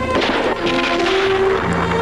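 Orchestral film score with steady held notes, and a blast of an explosion or gunfire just after the start.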